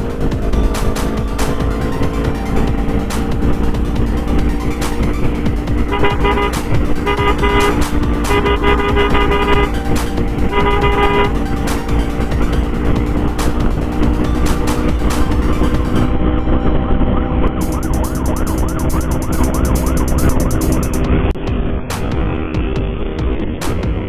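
Motorcycle riding at speed, with steady engine and road noise. About six seconds in, a vehicle horn toots four or five times in quick succession, the last blast ending around eleven seconds in.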